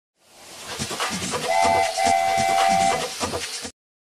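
Steam train chugging with a steady beat of about four strokes a second while its whistle sounds twice, a short blast then a longer one, fading in at the start and cutting off suddenly near the end.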